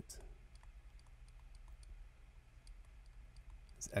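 Faint, irregular light clicks and taps of a stylus writing on a pen tablet, over a steady low hum.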